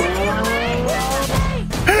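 Car engine revving up, its pitch rising steadily for about a second and a half, over background music.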